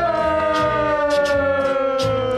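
A long drawn-out cheering shout, one held note sliding slowly down in pitch, over background music with a steady beat.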